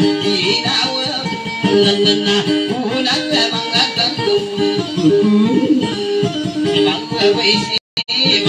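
Guitar playing Dayunday music, plucked notes in a quick, steady rhythm. The sound cuts out for an instant near the end.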